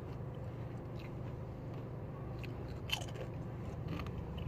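A person chewing and biting into a taco, with a few short crunches and clicks, over a steady low hum.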